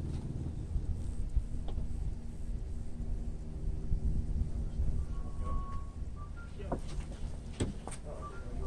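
Mitsubishi 3000GT being pushed slowly by hand out of a garage, a low rumble of its tyres rolling, with two sharp knocks near the end.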